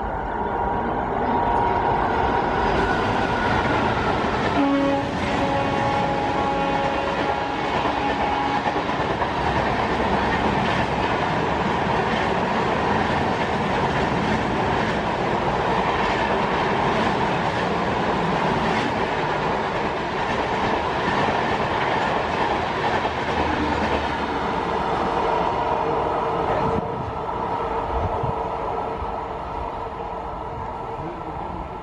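WAP-4 electric locomotive hauling a passenger express through at speed. Its horn sounds twice in the first several seconds, a higher tone and then a longer, lower one. Then comes the steady rumble and clickety-clack of the coaches rattling past, which drops away near the end as the last coach passes.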